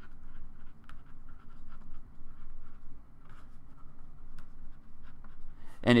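Felt-tip Sharpie marker writing on paper: faint scratching strokes with a few light taps.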